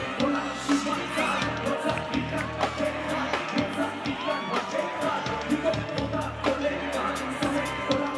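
Live hip-hop band music over a concert PA: a steady drum beat with bass and a vocal line.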